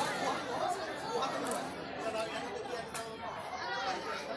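A crowd of people chattering, many voices overlapping in the background with no one voice standing out.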